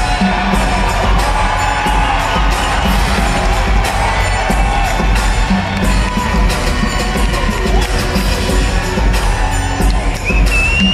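Loud music with a heavy bass beat played over an arena sound system, with a crowd cheering and shouting throughout.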